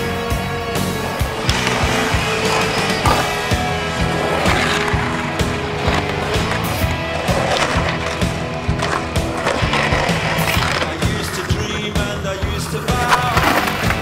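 Skateboard wheels rolling on concrete, with sharp clacks of tail pops and landings and a board grinding a concrete ledge, heard over loud music.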